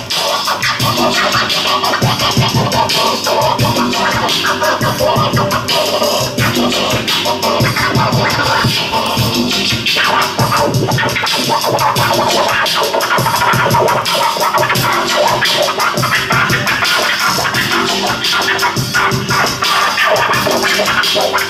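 Vinyl record being scratched on a turntable, the record pushed back and forth by hand and cut with the mixer's crossfader, over a steady electronic hip hop beat.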